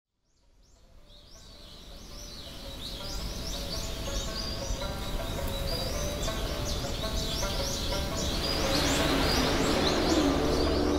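A chorus of birds chirping, fading in from silence and growing louder, over soft sustained musical tones. A rushing noise swells up near the end.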